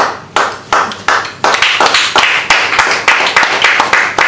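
Audience applause: sharp hand claps close to the microphone, several a second, starting suddenly and running on steadily.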